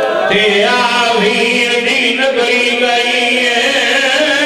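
A man's voice chanting in a sung, melodic style through a public-address system, with long held, wavering notes.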